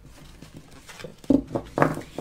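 A deck of tarot cards being shuffled by hand, with papery rubbing and then two sharp knocks about a second apart in the second half. The cards are stiff and are not sliding easily.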